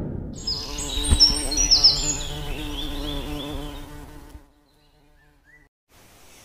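Intro logo sound effect: a boom fading out, then a buzzing, insect-like drone with high chirping tones over it that cuts off suddenly about four seconds in, leaving near silence with one faint chirp.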